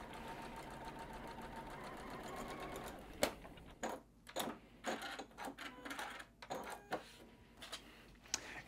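Domestic sewing machine stitching a seam at a steady run for about three seconds, then stopping. A series of short clicks and handling rustles follows as the sewn piece is taken from the machine.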